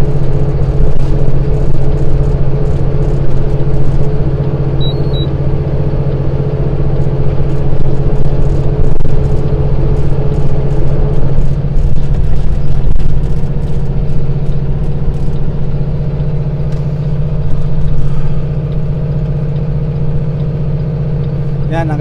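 Semi-truck's diesel engine droning steadily under load, heard from inside the cab, with a slight change in pitch about halfway through.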